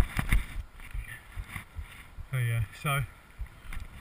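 A runner's footfalls on a muddy trail, picked up through a chest-mounted GoPro along with rubbing and jolting of the mount: two hard knocks at the start, then softer, irregular thuds.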